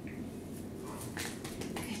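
Black poodle puppy moving about on a hard floor beside its kneeling handler: a few light clicks in the second half and a brief faint high squeak at the start.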